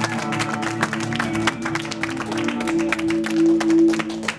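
Live rock band of electric guitar, bass guitar and drum kit holding a sustained chord with cymbal and drum hits. It swells about three and a half seconds in, then stops near the end.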